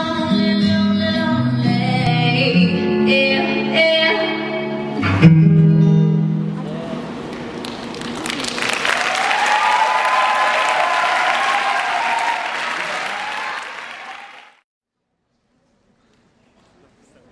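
A music track ends on a sharp final hit about five seconds in, with a low note held briefly after it. Then an audience applauds and cheers loudly for about seven seconds, and the sound cuts off abruptly.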